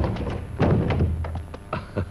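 A wooden door pushed open hard, giving two heavy thuds about half a second apart.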